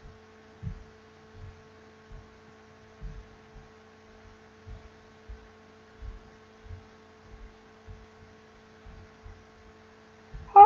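A steady electrical hum on a microphone channel, with soft low thumps coming irregularly about once or twice a second.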